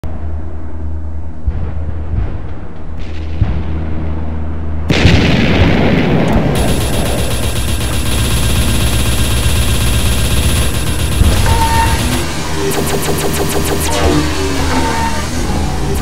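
Film soundtrack: a low music drone, then about five seconds in a sudden loud hit as the score swells. It is mixed with battle effects of rapid gunfire and booms, with fast, evenly spaced shots near the end.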